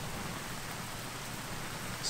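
Steady hiss of an overhead garden sprinkler's spray falling on the plants.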